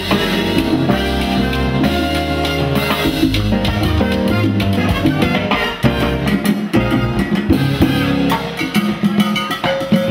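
Live salsa band playing an up-tempo number, with congas and timbales over bass and horns. About six seconds in, the bass drops away for a couple of seconds, leaving mostly the percussion, then the full band comes back in.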